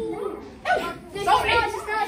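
A person's voice on stage, in short vocal sounds with no clear words.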